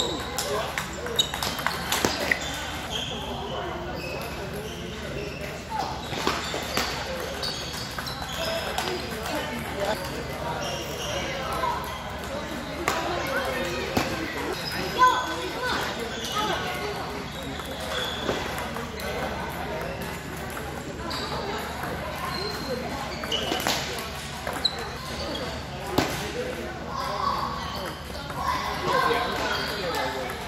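Table tennis balls clicking off paddles and tables in irregular runs of sharp ticks during rallies, from this table and neighbouring ones, over the steady talk of people in the hall.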